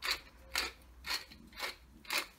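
Wooden pepper mill being twisted by hand, grinding peppercorns in short rasping strokes, about two a second.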